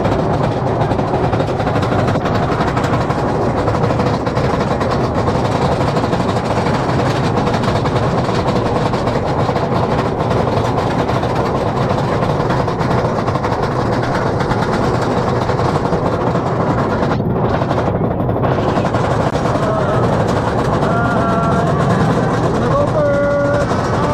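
Roller coaster ride heard from a seat on the moving train: a steady rumble of the train on the track mixed with wind buffeting the microphone. Riders' voices come in near the end.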